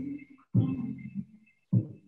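Soft background music with a low, pitched pulse about every 1.2 seconds; each pulse starts strongly and fades away.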